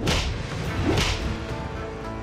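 Two swishing whacks of added fight-scene blows, one at the start and one about a second later, over background music.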